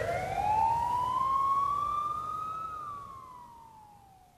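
A single siren wail closing the song: it rises slowly for nearly three seconds, then falls away and fades out.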